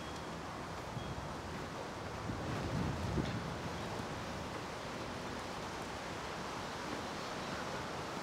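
Steady outdoor background noise, an even hiss, with a brief low rumble about three seconds in.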